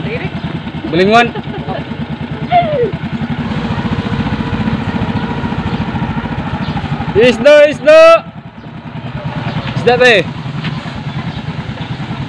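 Small motorcycle engine running steadily at low speed as it rolls along, with short shouted calls by a voice breaking in several times, loudest about seven to eight seconds in.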